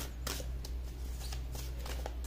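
A deck of tarot cards being shuffled by hand, the cards slapping and riffling in short, irregular strokes over a steady low hum.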